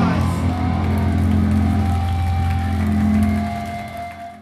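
A metal band's closing chord on distorted electric guitar and bass, held and ringing out with no drums, fading near the end as the song finishes.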